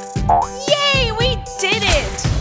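Children's cartoon background music with a springy comic sound effect and a cartoon voice sliding up and down in pitch.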